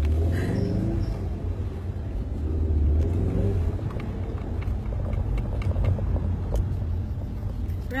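Steady low rumble of a moving car heard inside the cabin, with indistinct voices over it.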